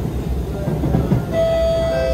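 Steady rumble of an Alstom Movia R151 metro train running, heard from inside the carriage. About a second and a half in, a two-note chime sounds over it, a higher note and then a lower one. This is the onboard PA chime that comes before a passenger announcement.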